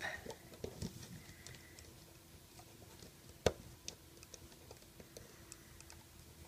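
Faint, scattered small clicks and taps of a hook and rubber bands being worked on the pegs of a plastic Rainbow Loom, with one sharper click about three and a half seconds in.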